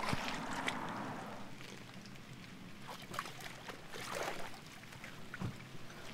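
Faint outdoor ambience at a shoreline: a low, even wash of wind and water, with a few light knocks scattered through it.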